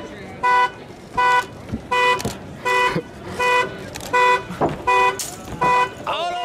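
Car alarm sounding the car's horn in regular pulses, about eight honks a little under a second apart, over the noise of a street crowd.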